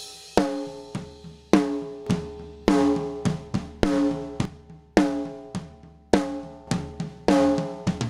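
Recorded snare drum track played back, a loud hit about once a second, each ringing out with a pitched ring, with softer kick and tom hits in between. A compressor with makeup gain is switched in and out at matched volume. With it on, the attack of each hit is pushed down and the drum's ring and the rest of the kit and room come up.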